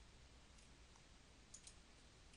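Faint computer mouse button clicks over near silence: one at the start and a quick pair about one and a half seconds in.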